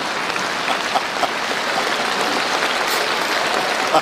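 Audience applauding steadily in response to a joke's punchline.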